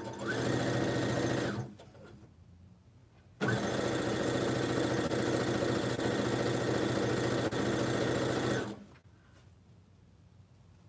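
Electric sewing machine stitching a seam in two runs: a short burst of about a second and a half, then after a pause a steady run of about five seconds. The motor rises quickly to speed at the start of each run and stops near the end.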